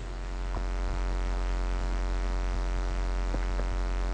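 Steady electrical mains hum through the public-address system: a constant low buzz with a ladder of even overtones. A few faint clicks sound over it.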